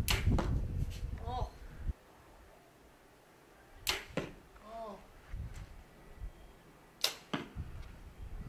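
Three compound bow shots, each a sharp snap of the string on release: one at the start, one about four seconds in, and one about three seconds after that. Low wind rumble on the microphone during the first two seconds.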